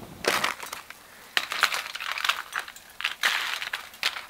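Aluminium foil crinkling in several irregular bursts as it is handled and frozen food is laid on it.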